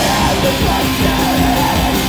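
Live rock band playing loud, with electric guitars and a drum kit, and a vocalist yelling over them.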